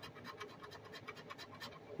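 Faint, rapid scratching as the coating is rubbed off a scratch-off lottery ticket, in many short strokes.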